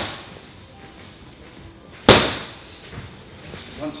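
A boxer's punch smacking into a trainer's pad about two seconds in: one loud slap with a long echoing tail in the room.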